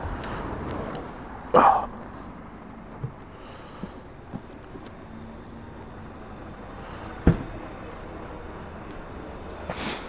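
Givi Trekker Outback aluminium motorcycle top box being opened and shut. A short clatter comes about one and a half seconds in, then a few light ticks, then a single sharp click about seven seconds in as the lid latches, over a steady low street background.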